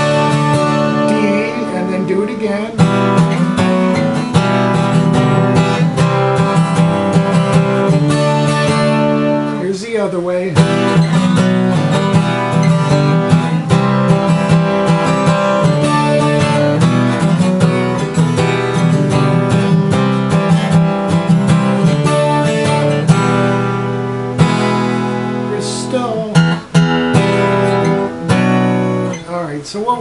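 Twelve-string acoustic guitar strummed in a steady rhythm through a chorus chord progression, E minor moving to B minor.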